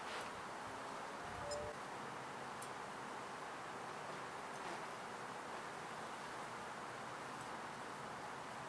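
Faint, steady outdoor background hiss with no clear single source, and a brief faint chirp about a second and a half in.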